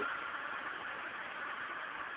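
Steady background hiss of city street traffic, with no distinct events.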